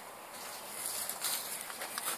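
Quiet outdoor background noise with a few faint soft rustles a little over a second in.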